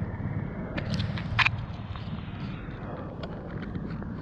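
Footsteps on dry leaves and dirt with a few sharp clicks, over a low steady rumble.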